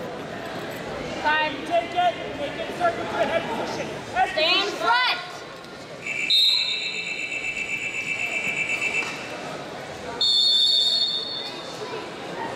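Coaches shouting, then the match-clock buzzer sounding for about three seconds as the wrestling period clock runs out. A second, higher and louder signal tone about a second and a half long follows near the end.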